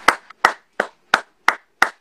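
A person clapping: six sharp, evenly spaced claps, about three a second.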